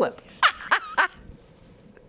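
A person's voice: three short, high-pitched exclamations in quick succession about half a second in, then quiet.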